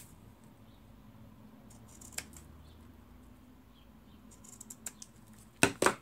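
Scissors snipping satin ribbon: faint rustling and a light click, then two sharp snips close together near the end.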